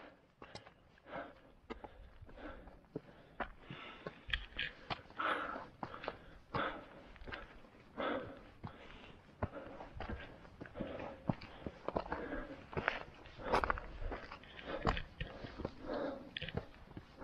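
Irregular crunching steps on a stony mountain trail: footsteps on rock and gravel, fairly quiet, with the occasional louder scuff.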